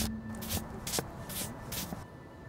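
Several short rustling strokes of a gloved hand brushing across the paper pages of an open book, over a low hum that fades away in the first half.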